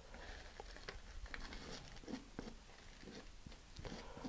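Faint rustling of a folded sheet of paper with scattered small clicks and scrapes, as spilled sand is scooped off a cutting mat onto the paper.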